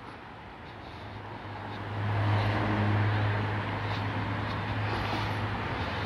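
Traffic noise from a vehicle going by on the road beside the field: a steady rushing hum that swells about two seconds in and holds.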